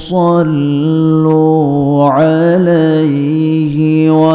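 A man chanting a recitation solo through a microphone, holding long, steady notes that slide slowly up and down in pitch, with a quick breath at the start and a brief rising flourish about two seconds in.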